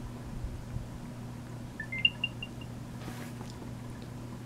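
Apple AirTag's small speaker playing its short electronic chime about two seconds in, a few rising beeps and then quick repeated notes at the top pitch, the sound it makes when it finishes pairing with an iPhone. A low steady hum runs underneath.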